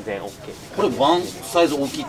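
Men's voices talking, loudest in the second half, over the rubbing of stretchy fabric as the sleeve of a tight cycling top is tugged and pulled.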